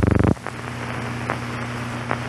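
Old film soundtrack starting up: a short buzzing tone for about a third of a second, then steady hiss and low hum with a few faint clicks of surface crackle.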